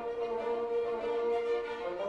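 Symphony orchestra playing a classical-era symphony, the violins and strings to the fore in a quiet passage, with one note held for most of it.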